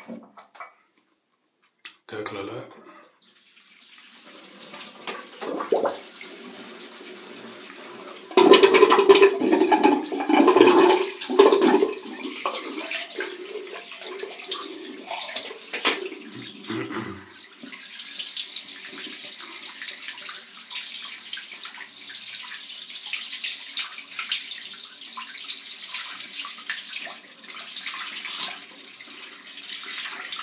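Water splashed onto the face by hand over a running bathroom tap, rinsing off after the first pass of a shave. The splashing is loudest for a few seconds about a third of the way in, and a steady run of tap water fills the second half.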